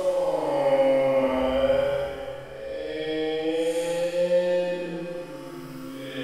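Closing music made of long held notes in a slow, chant-like line, the pitch bending gently; one long note gives way to a second, about two and a half seconds in.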